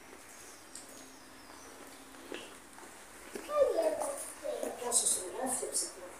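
Quiet ambience for about three seconds, then indistinct voices speaking briefly, unclear enough that no words come through.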